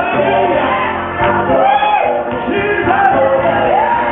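Live gospel music: a lead singer's voice gliding up and down in long arching runs over held chords and a steady bass line, with shouts from the group.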